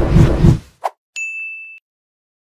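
Outro sound effect on a news end card: a loud rushing whoosh with low thumps, a short click, then a single high ding that rings for about half a second and cuts off.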